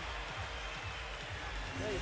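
Arena crowd noise under music with a steady bass beat, about three beats a second. A man's voice comes in near the end.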